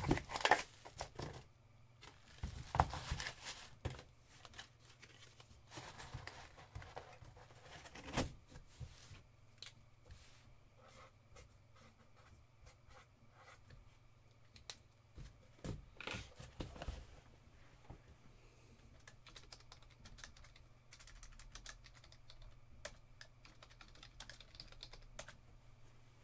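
Scattered clicks of typing on a computer keyboard, with a few louder knocks of cardboard boxes being handled and set down.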